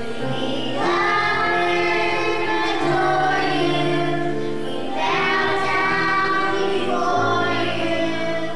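A children's choir singing a song together in long held notes, a new phrase starting about a second in and another about five seconds in.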